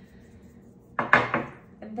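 A small ceramic dish set down on a table: a quick cluster of hard knocks and clinks about a second in.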